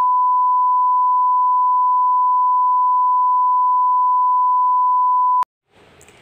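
Television colour-bar test tone: a single loud, steady beep held at one pitch, cutting off sharply near the end.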